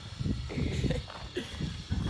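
Low rumbling and scuffling handling noise as a puppy is carried down and set on the grass.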